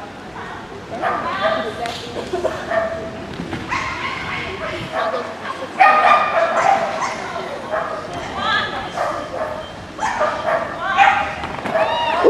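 Border collie barking and yipping excitedly in repeated short bursts while running an agility course, mixed with a person's voice calling.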